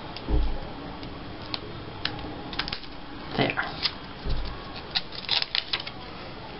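Paper and cardstock pieces being handled and pressed down onto a paper tag on a tabletop: light rustles and small clicks, with two dull thumps, one about half a second in and one about four seconds in.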